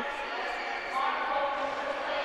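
Ice hockey rink ambience: a steady background wash of the arena with faint distant voices about a second in.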